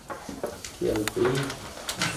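Low, indistinct murmured voice sounds from a man, in a few short bits, with a couple of light clicks.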